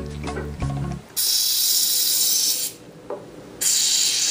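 Aerosol can of PAM cooking spray hissing as it is sprayed onto a metal baking sheet: one burst of about a second and a half, then a second burst starting near the end. Music plays under the first second.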